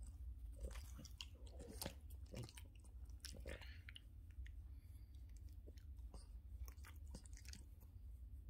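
A Boston terrier's faint mouth clicks and lip-smacking, up close, with a short breathy yawn about three and a half seconds in.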